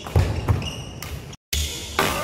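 Badminton rackets striking the shuttlecock in a fast drive exchange, two sharp hits about a third of a second apart within the first half second, over background music. The sound cuts out for a moment just past the middle.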